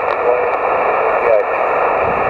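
Steady hiss of a Yaesu all-mode transceiver receiving 6-metre single sideband: band noise held to the narrow voice passband, with a weak voice faintly heard under it once or twice.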